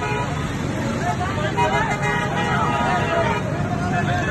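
A crowd of men shouting and clamouring over one another in a street scuffle, with louder raised voices in the middle.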